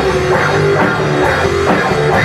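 A rock band plays an instrumental passage on two electric guitars and a drum kit, with held guitar notes over a steady drum beat.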